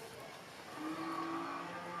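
Quiet room background with a faint held tone for about a second in the middle.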